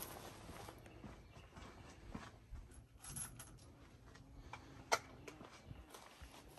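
Quiet outdoor background with faint rustling and handling noises, and one sharp crack about five seconds in.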